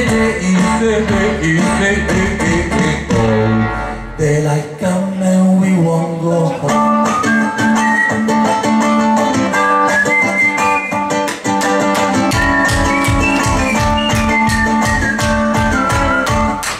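A live acoustic band plays an instrumental passage on guitars and bass, with a melodic lead line over the strumming. The deep bass drops out for several seconds mid-passage and comes back in.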